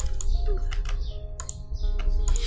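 A few sharp computer keyboard and mouse clicks, spaced irregularly, over quiet background music with held notes.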